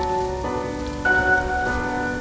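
Rain sound effect under background music of held, ringing tones, with new notes coming in about half a second and a second in.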